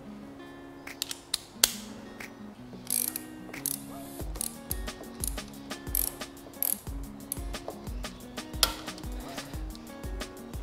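A ratchet driving a 3/8-inch Allen bit clicks in repeated short strokes as it loosens a motorcycle's transmission dipstick plug. Background music with a steady beat plays underneath.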